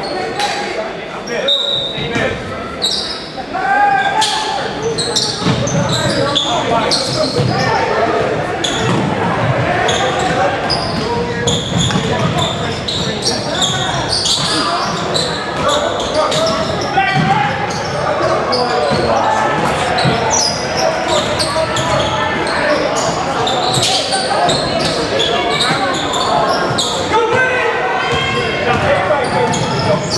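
Indoor basketball game: a ball bouncing on a hardwood gym floor among players' and spectators' voices, all echoing in a large gymnasium.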